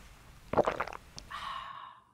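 Slurping and gulping of a drink sipped through a straw, a few short wet bursts about half a second in, ending in a brief breathy vocal sound from an open mouth.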